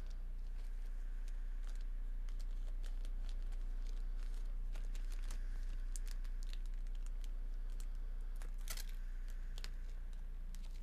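Scattered light clicks and ticks over a steady low electrical hum, with a brief flurry of clicks near the end.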